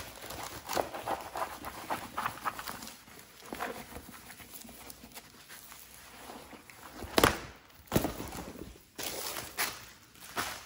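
Handling noise from a rolled, plastic-wrapped canvas and its paper backing being unrolled and lifted: irregular crinkling and rustling with small taps, and two sharp knocks about a second apart near the end.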